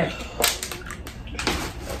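Plastic packaging rustling and crinkling as it is handled, in a few short bursts.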